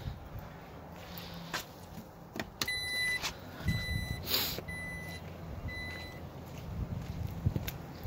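A power liftgate's warning chime on a 2019 Jeep Grand Cherokee sounds four times, about a second apart, the first beep a little longer, over a low motor hum. It signals the automatic tailgate starting to close.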